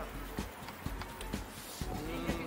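Riding noise of a bicycle: a light click about every half second over a low rumble of wind and road.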